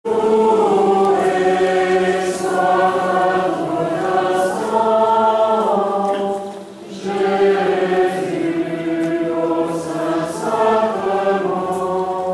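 A group of voices singing a slow chant-like hymn together, long phrases of held notes with a short break for breath about six seconds in.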